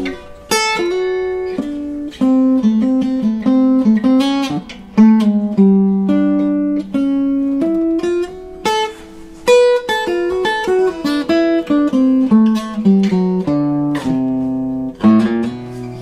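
Monteleone Rocket Convertible acoustic archtop guitar being played: a continuous passage of plucked single notes and chords, each struck sharply and ringing down.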